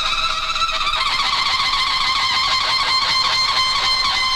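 TV channel logo ident sting: a loud sound effect with several steady high tones over a fast, even flutter, holding level throughout.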